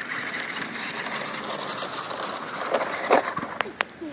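A Traxxas 1/16 Slash 4x4 RC truck's electric motor and drivetrain whining steadily as it drives over gravel and dirt, with the tyres crunching on the grit. A knock about three seconds in and two sharp clicks near the end.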